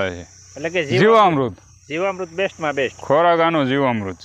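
A man talking in short phrases over a steady, high insect drone.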